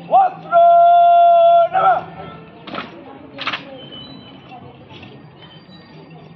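A drill commander's shouted word of command: a short call, then a long drawn-out cry held on one note for about a second, ending in a clipped final word. About a second later come two brief crisp slaps as the cadets carry out the rifle drill movement.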